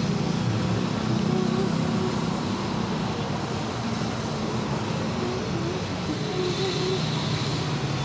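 A motor vehicle engine running steadily at low revs, a continuous low hum, over the general noise of road traffic.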